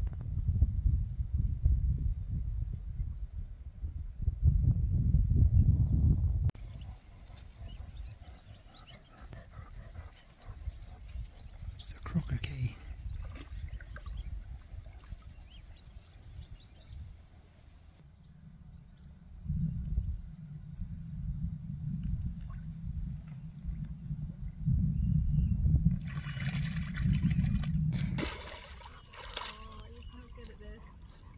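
A husky-type dog wading in a shallow lake, water sloshing and trickling around its legs. A low rumble comes and goes, loudest at the start and again in the second half.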